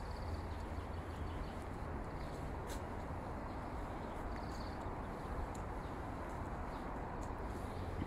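Outdoor ambience with a steady low rumble, and a small bird briefly chirping twice, high-pitched, once near the start and again about halfway through.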